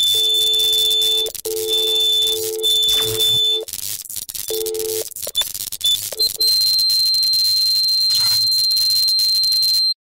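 Steady electronic tones coming through a sound system: a low tone with overtones and a high, thin tone switch on and off several times. Near the end a single high tone holds for about three seconds and cuts off suddenly.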